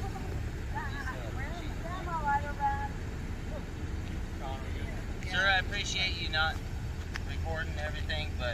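Indistinct voices of people talking some distance off, in short stretches, over a steady low rumble.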